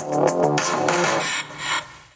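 Electronic music with a keyboard-like melody and a beat, played through a ThinkPad X1 Carbon Gen 13 laptop's built-in speakers for a speaker test. The music thins out and fades down in the last half second.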